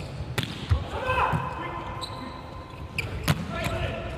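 A volleyball struck hard twice during a rally: one sharp hit shortly after the start and another a little past three seconds in. Between the hits, a player calls out on the court in a large hall.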